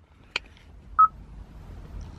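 A single click, then about half a second later one short, high electronic beep.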